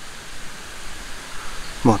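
Steady, even background hiss of outdoor ambience, with no distinct sounds from the hands or plate; a man's voice starts just before the end.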